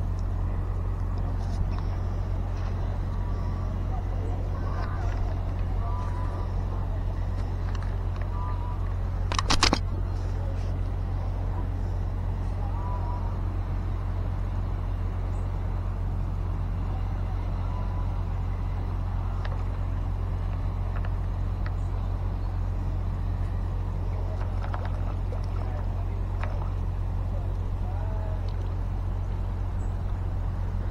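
Steady low outdoor rumble, with a few faint short chirps and one brief sharp noise about ten seconds in.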